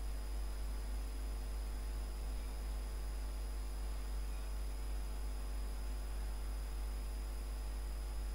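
Steady low electrical hum and hiss of the recording's background noise, with a faint thin high whine over it. No distinct sound stands out.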